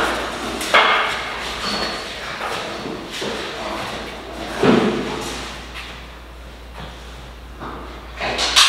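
A few heavy thumps and knocks echoing in a large, bare workshop as a steel two-post car lift column is manhandled into position. The strongest knocks come nearly a second in and again about five seconds in.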